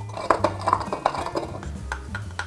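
Wooden pestle crushing cardamom seeds in a wooden mortar: a run of light knocks, a few a second, over background music.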